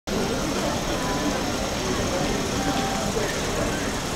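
Busy street ambience: indistinct chatter of passers-by over a steady background of street and traffic noise.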